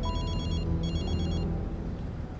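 An electronic telephone rings with a warbling trill: two short rings, each under a second, with sustained background music and a low rumble beneath.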